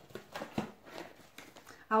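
Cardboard box being opened and handled by hand: a few short, scattered rustles and taps.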